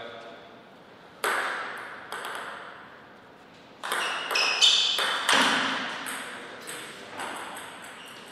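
Table tennis rally: a plastic ball struck by rubber-faced paddles and bouncing on the table, giving about ten sharp hits at uneven spacing, most of them in quick succession in the second half. Each hit rings out with a long echo from the hall.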